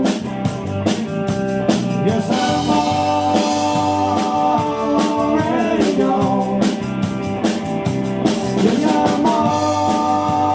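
Live band playing: electric bass, electric guitar and a drum kit with a steady beat.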